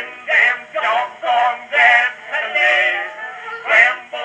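Edison Standard phonograph playing an Edison Blue Amberol four-minute cylinder through its cygnet horn: an early acoustic song recording, thin-sounding, with no deep bass and no high treble.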